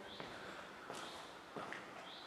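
Faint footsteps on a stone floor, a few soft steps about a second apart in a quiet, echoing interior.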